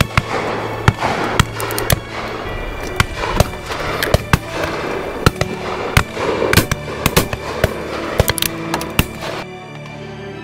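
Shotgun shots, more than a dozen at irregular intervals, some loud and close and others fainter, from guns firing at driven game birds, over background music.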